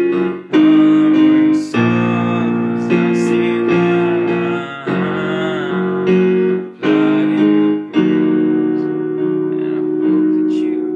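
Ashton digital piano playing held chords, a new chord struck about every second, with brief breaks between phrases.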